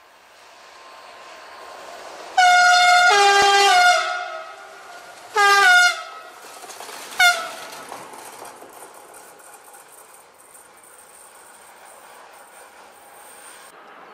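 A locomotive running light sounds its two-tone horn three times: a long blast whose pitch drops partway through, a shorter blast about two seconds later, then a brief toot. A steady rail rumble rises before the horn and carries on after it.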